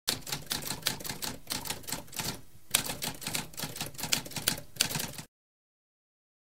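Typewriter keys clacking in a rapid run of keystrokes, with a short pause about halfway through, stopping abruptly a little past five seconds in.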